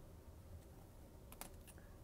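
Near silence with a low hum, broken by a few faint clicks about one and a half seconds in as a trading card in a rigid plastic holder is handled and set down.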